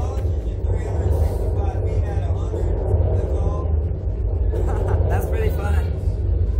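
Wind buffeting the microphone of a SlingShot ride's onboard camera as a steady low rumble while the capsule flies through the air, with the riders' voices and laughter over it.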